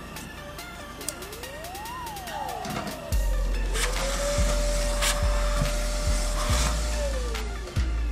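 Vacuum cleaner switched on about three seconds in and run steadily as its hose nozzle is drawn over the cut mink pelt, with brief dips in its sound. Electronic background music with a tone sliding up and down plays throughout.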